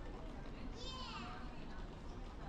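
Busy terminal hall ambience: distant chatter of travellers over a steady low hum, with a young child's high-pitched squeal about a second in that falls in pitch.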